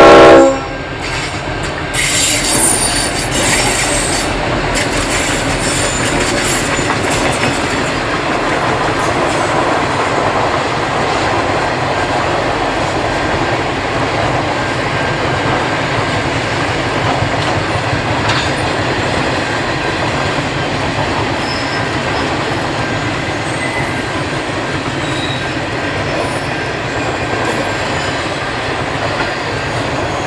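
A diesel freight train's horn blast cuts off about half a second in, then the locomotives pass and a long rake of grain hopper wagons rolls by with a steady rumble of wheels on rail. There is a high squeal from the wheels around two to four seconds in.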